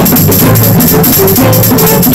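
Live acoustic folk jam: violin playing a tune over hand drums, with a brisk, steady beat.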